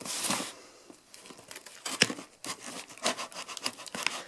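Brown packing tape being torn open on a cardboard box, with the cardboard flaps scraping and rustling under the hands. A short tearing burst in the first half second, then scattered scrapes and a few sharp taps.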